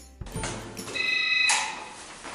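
An electric doorbell rings about a second in: a steady high buzzing tone lasting about half a second.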